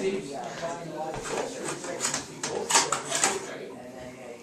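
A person drinking tonic water from a can: a few irregular sips and gulps, with low voices in the background.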